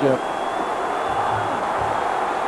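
Large stadium crowd making a steady wall of noise, with faint voices within it.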